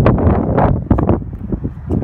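Wind buffeting the microphone, loud and gusting unevenly.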